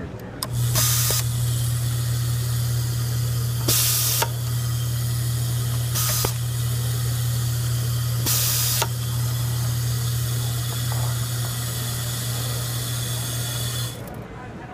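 Vibratory bowl screw feeder running with a steady low hum. It is broken four times, about two to two and a half seconds apart, by short hisses of compressed air, each blowing a screw through the feed tube to the automatic screwdriver.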